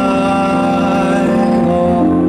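Live music: sustained chords on a Yamaha MOXF6 stage keyboard with long held sung notes over them, the chord changing near the end.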